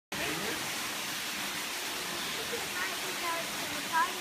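Steady rushing hiss of background ambience, with faint snatches of people talking in the second half.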